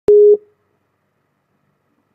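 A single short electronic beep: one steady low tone lasting about a third of a second, starting with a sharp click.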